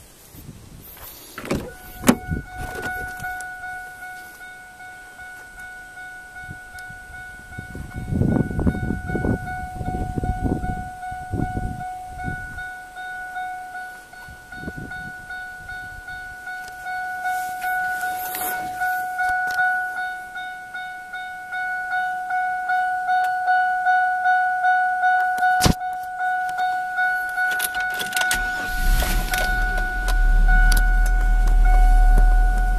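A Chevrolet Venture minivan's warning chime rings over and over after the driver's door clicks open, the kind GM vans sound with the door open. Thumps and rustling come from someone moving at the driver's seat about eight to twelve seconds in, there is a sharp click about three-quarters of the way through, and a low rumble comes in near the end.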